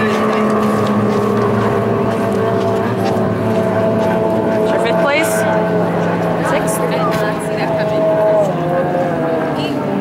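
Two-stroke racing outboard engines on D Stock hydroplanes running at speed: a loud, steady drone whose pitch wavers slightly.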